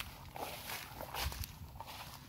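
Footsteps through long grass, the stems swishing and rustling with each uneven step.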